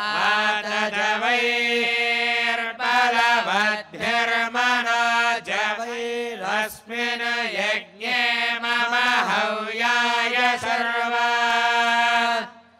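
Male voices chanting Vedic mantras together, mostly on one held pitch, with short breaks for breath between phrases.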